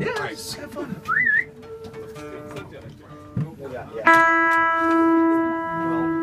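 A short whistle with a wavering upward glide about a second in, then scattered acoustic guitar notes, with one loud note struck about four seconds in that rings on and slowly fades.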